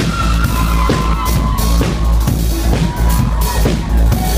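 Live rock band playing loudly, recorded from the crowd: a full drum kit with regular cymbal crashes over heavy bass and sustained instrument or vocal lines.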